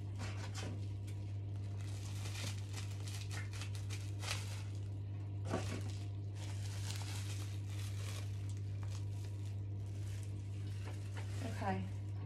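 Bubble wrap crinkling and crackling in fits and starts as a wrapped plastic container is unwrapped by hand, over a steady low hum.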